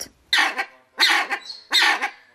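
A large aviary bird giving harsh, bark-like calls, three in quick succession about three quarters of a second apart.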